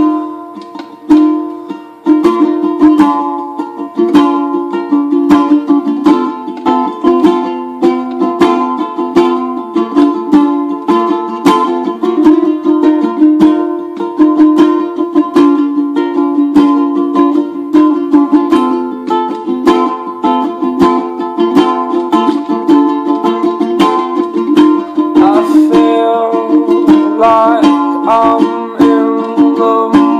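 Ukulele strummed in a steady rhythm, starting suddenly at the very beginning; a voice sings along briefly near the end.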